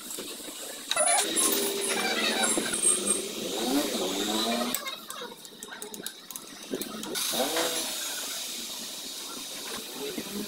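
A motor engine runs and revs for several seconds, its pitch rising and falling, then fades. Light metallic clinks of hand tools on the engine follow in the middle.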